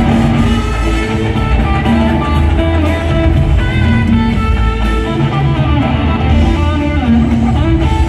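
Live rock band with an electric lead guitar playing held melodic lines over drums, percussion and bass, through an arena sound system.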